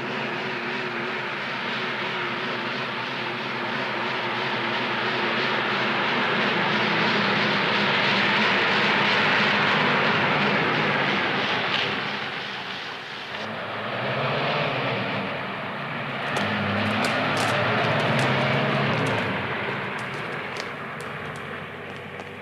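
Engines running, their noise swelling to a peak about halfway through and dipping, then building again with a lower, pitched drone and light clicking before fading near the end.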